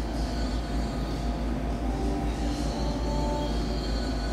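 A steady low rumble with a few faint, steady hum tones above it, unchanging throughout.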